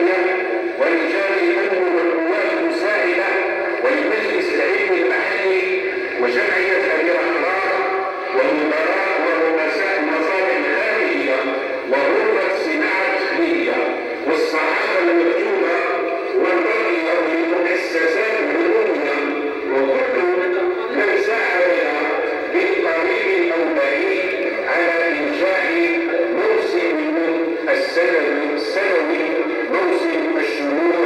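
Continuous music with singing voices, the pitch wavering and the sound dense.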